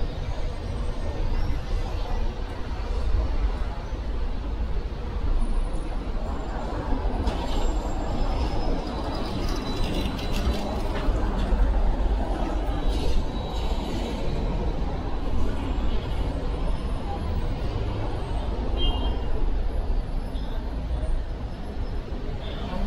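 Steady city street traffic noise from passing cars and buses, a continuous low rumble, with snatches of passers-by talking.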